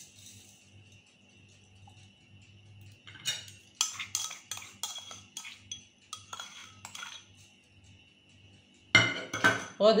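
A utensil clinking and scraping against a stainless steel pot as sugar is tipped in over peeled lemon pieces: about a dozen sharp clicks over some four seconds, after a quiet start.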